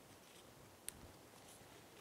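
Near silence: room tone, with one faint click about a second in as the compression gauge hose is fitted to its spark plug hole adapter.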